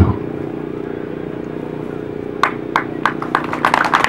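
A motor running steadily, a low hum made of several fixed tones. Near the middle a few short clicks and fragments of speech come in over it.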